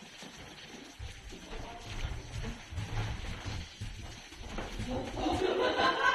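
Footsteps and low thumping handling noise of people walking along a corridor with a phone camera. Children's voices come in near the end.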